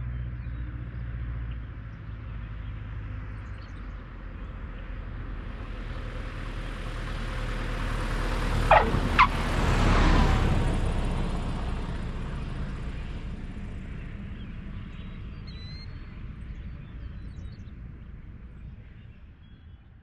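Single-engine piston light aircraft landing. Its engine and propeller drone builds as it approaches, peaks as it passes close about ten seconds in, then fades away. Two short tyre chirps sound just before the peak, typical of the main wheels touching down.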